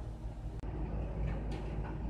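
Steady low outdoor rumble of background noise, with a brief break about half a second in.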